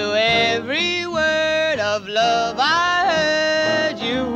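Female jazz vocalist singing a ballad live, holding long notes that slide up and down in pitch, accompanied by a piano, bass and drums trio.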